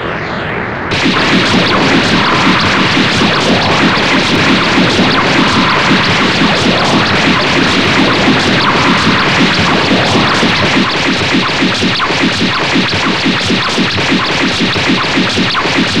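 Added soundtrack of sound effects and music: an explosion effect fades out at first. About a second in, a loud, dense, rapidly pulsing crackle starts and keeps going.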